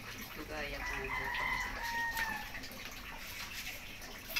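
A rooster crowing once: a single drawn-out call of about two seconds that climbs, holds and then drops away.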